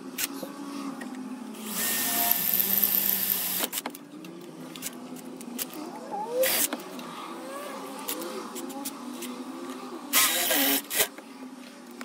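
Cordless drill with a twist bit boring a hole through a metal engine cover plate clamped in a vice. It runs hard for about two seconds, then goes in shorter bursts about six and ten seconds in, with the bit squealing unevenly as it cuts between them.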